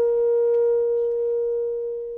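Music: a woodwind instrument holding one long, steady note that slowly grows quieter.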